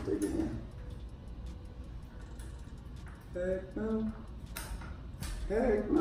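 Small metallic clinks and clicks from hands working on a bicycle's rear disc brake caliper and pads, with a couple of sharp clicks near the end. A brief murmur of a voice comes partway through.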